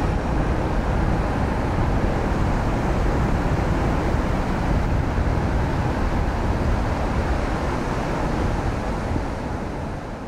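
Steady rush of ocean surf with low wind rumble on the microphone, fading down near the end.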